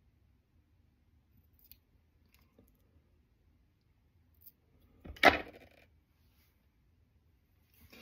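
Fly-tying scissors trimming a dry fly's CDC wing shorter: faint small handling clicks, then one short sharp snip about five seconds in.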